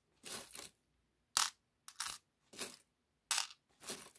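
Small metal charms jingling and clinking as a hand stirs them in a cloth pouch, in about six short separate rattles.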